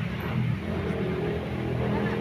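A low, steady engine hum from a motor vehicle running nearby.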